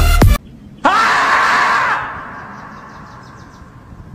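Electronic dance music cuts off just after the start. About a second in comes one loud, drawn-out scream that rises in pitch: the screaming-marmot meme yell. It then trails away over the following seconds.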